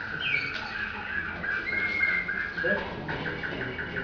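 Domestic canary singing: rows of short repeated chirping notes with a few falling whistles and a held note in the middle, breaking into a faster trill near the end. It is heard through a television speaker.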